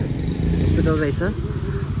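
Motorcycle engine running with a steady low rumble, with a short bit of a person's voice about a second in.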